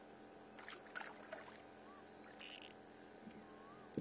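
Very quiet handling of a fishing rod and reel: a few soft clicks and scrapes about a second in, a brief rustle midway, and one sharp click near the end.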